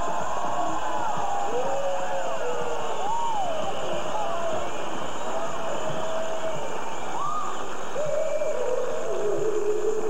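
Several people whooping and cheering in celebration over music, their voices gliding up and down in pitch. From about eight seconds in, a single held, hummed tone takes over.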